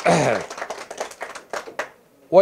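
A man's voice trailing off with a falling pitch into a microphone, then scattered hand-clapping from a few people that thins out and stops near the end.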